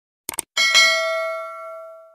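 A short click sound effect, then a single bell ding that rings out and fades over about a second and a half: the notification-bell sound of a subscribe-button animation.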